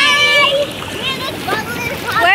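Hot tub water churning and splashing from the jets, under a high voice holding one long note that breaks off about half a second in, followed by short snatches of voices.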